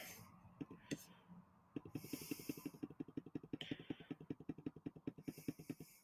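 A computer mouse making a fast, even run of faint clicks, about ten a second, for roughly four seconds. Two soft hisses come in during the run.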